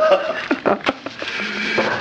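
People laughing in short bursts, with a low steady hum coming in during the second half.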